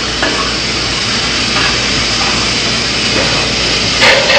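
Kitchen tap running steadily into a cooking pot, filling it with water.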